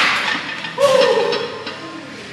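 A powerlifter's heavy breath fading out, then a short shout about a second in, straight after a grinding maximal barbell squat, with a few light knocks around the shout.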